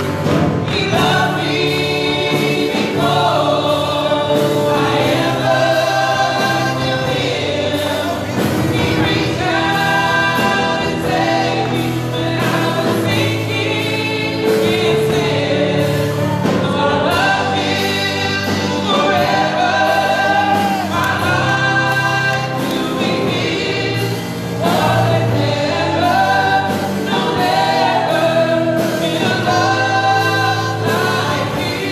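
Live gospel worship song: several women singing together into microphones, over steady held chords from the accompaniment.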